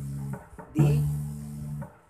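Electric bass guitar, single notes plucked on the low E string and left to ring: one note fading, then the next fret up plucked about a second in. It is a chromatic run climbing the string one semitone at a time.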